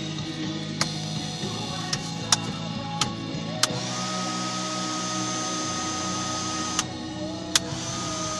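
Music playing quietly from the car stereo over a steady hum from the electric car's cabin heater running, with a few sharp clicks.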